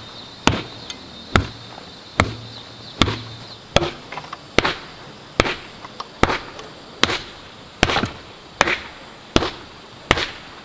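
Earth being tamped down on top of an earth wall: a hand tool strikes the packed soil in an even rhythm, about one sharp thud every 0.8 s, with a few lighter knocks in between.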